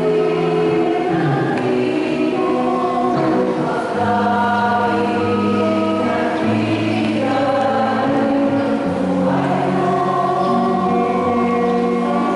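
Choir singing a slow hymn in several parts, with notes held for a second or two each.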